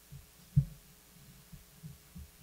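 Near-quiet pause with a faint low hum, broken by one short, low thump about half a second in and a few softer low bumps after it.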